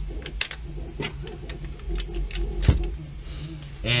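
Parts of a 3D-printed Caliburn foam blaster clicking and knocking as it is handled and put back together, with one sharper click about two and a half seconds in.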